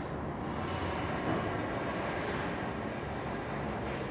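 Timber yard machinery running: a steady industrial rumble with a few faint knocks.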